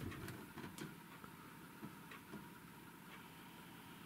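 Near silence: faint room tone with a few soft ticks in the first half.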